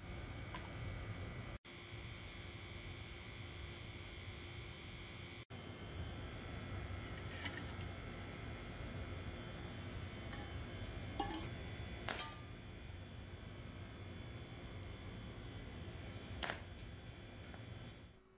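A few light clicks and knocks of tongs and a steel thermos over a steady background hum, then a sharper knock near the end as a claw hammer smashes an orange frozen hard in liquid nitrogen on a concrete floor.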